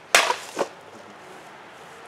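A sword blade striking and cutting through a plastic drinks bottle on a cutting stand: one sharp loud crack, then a second, smaller knock about half a second later.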